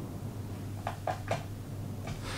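A wood screw being turned by hand through a thin plywood strip: three short, faint creaks close together about a second in, over a steady low hum.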